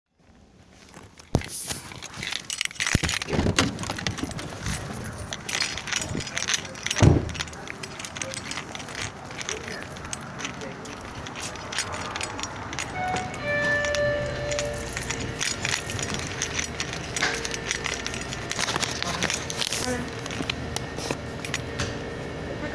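Handling noise of a phone recording from a pocket: rustling, scraping and clicking against clothing, with one loud thump about seven seconds in. From about halfway a few short steady tones and a held low tone sit faintly under the rustling.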